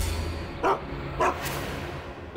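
A dog barking twice, about half a second apart.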